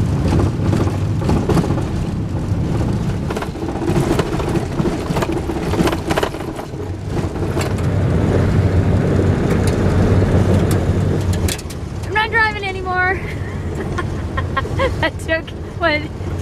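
Van driving on a gravel road, heard from inside the cab: a steady rumble of tyres and engine with many small sharp clicks of gravel striking underneath. The rumble drops about eleven seconds in, and a voice is heard briefly near the end.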